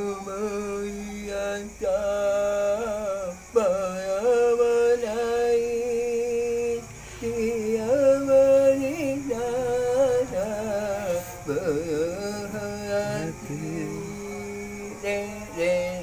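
A man singing solo, drawing out long, wavering held notes that slide slowly from pitch to pitch.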